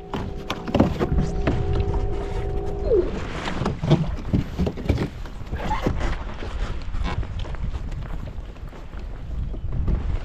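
Wind buffeting the microphone and water moving around a kayak on open water. Over the first three seconds a steady held tone sounds, then slides down and stops.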